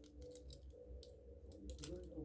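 Faint, scattered clicks of a plastic Mecanimal transforming dragon toy being handled, as its folded head and parts are pushed into place during transformation to vehicle form.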